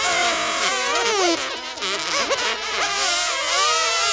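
A crowd of high-pitched children's voices cheering, shouting and laughing all at once.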